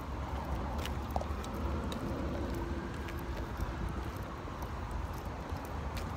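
Outdoor traffic ambience: a steady low rumble of road traffic, with a faint held tone for a couple of seconds in the middle and a few light ticks.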